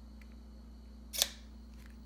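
A single short, sharp plastic click about a second in, from a servo lead and RC receiver being handled, over a faint steady hum.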